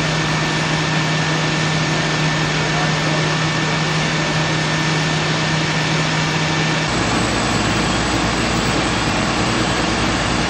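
Fire engines running steadily, an even engine drone with a steady hum. About seven seconds in the sound changes abruptly to a deeper, steady rumble.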